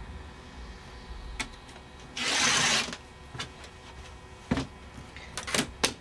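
Rotary cutter drawn once along an acrylic ruler through folded fabric, a single rasping cut of about half a second a little over two seconds in. Light clicks and taps of the ruler and cutter on the cutting mat come before and after it.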